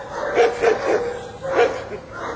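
A dog whining, with a drawn-out high whine broken by several short yips.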